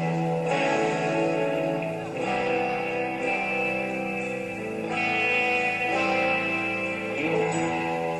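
Live band playing a slow song, led by guitar holding sustained chords that change every couple of seconds.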